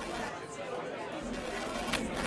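Indistinct chatter of several voices with no words standing out, over a break in the song's beat.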